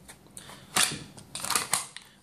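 Hybrid holster with a Kydex shell on a leather backing being handled and turned over: a few short scrapes and clicks, the loudest just under a second in.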